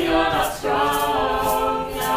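A small group of mixed voices singing together, with a short note and then, about half a second in, one long held note.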